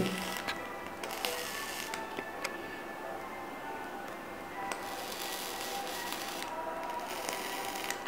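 Coil of a genesis atomizer with a stainless steel mesh wick, sizzling in short bursts as it is fired with a few drops of e-liquid on the wick. Faint music plays in the background.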